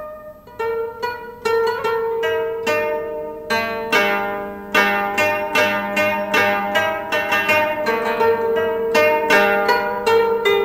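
Background music: a plucked, zither-like string instrument playing a slow melody, each note ringing on after it is plucked.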